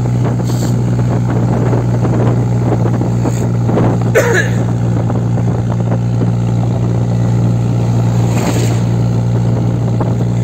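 Chevrolet D20 pickup's diesel engine running steadily under load as the loaded truck climbs a long hill, with wind and road rush over the open microphone.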